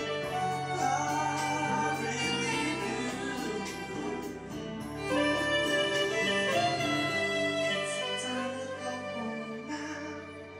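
Roland Aerophone AE-30 digital wind instrument on its soprano sax tone, playing a slow ballad melody in long held notes over a backing track with a steady bass line.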